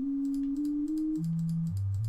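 A pure sine test tone from NCH Tone Generator jumps to a new note every half second or so as notes are clicked in its table. It first steps up slightly twice, then drops to lower notes. Faint mouse clicks come with the changes.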